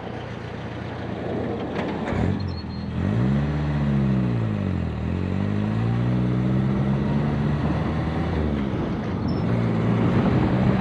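1968 Commer Dormobile's Sunbeam Alpine-derived four-cylinder engine pulling away under acceleration, heard from outside beside the van. The engine note climbs, drops back at a gear change about five seconds in, climbs again and settles to a steady run. It sounds just like an English sports car should.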